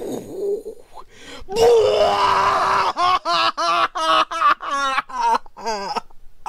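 A person's voice making a mock dying cry: one long loud drawn-out cry about a second and a half in. It is followed by a rapid run of short vocal sounds, about four a second, each bending up and down in pitch, like laughter.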